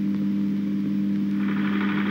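A steady low hum of two held tones, unchanging in pitch and level.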